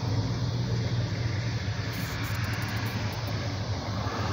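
Street traffic heard from inside a car's cabin, cars going past. A steady low hum runs underneath at an even level.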